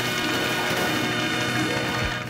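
Steady electronic buzz with a hiss over it, heard as microphone feedback; it cuts off near the end.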